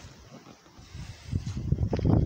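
Wind buffeting the phone's microphone: a faint hiss at first, then an uneven low rumble that builds from a little over a second in.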